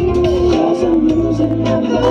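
Male vocalist singing a long held, wavering line into a handheld microphone over dance-pop backing music with a steady beat, through a PA.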